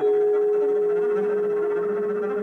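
Trio jazz music: a single note starts sharply and is held steady, slowly fading, over quieter accompaniment.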